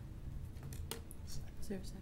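Quiet council-chamber room tone with a low hum and a few faint, sharp clicks and rustles of small handling noises, the clearest about a second in. A faint voice begins near the end.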